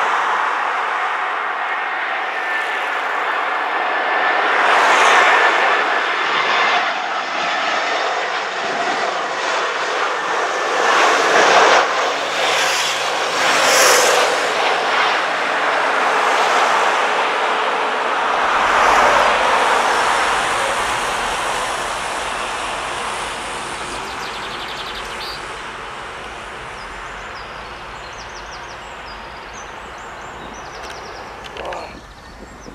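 Airbus A319 jet airliner on approach and landing: loud rushing jet engine noise with a thin steady whine, fading away over the last ten seconds as the aircraft rolls down the runway.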